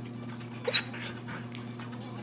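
A dog gives one short, high-pitched cry about two-thirds of a second in, then a fainter squeak just after, over a steady low hum.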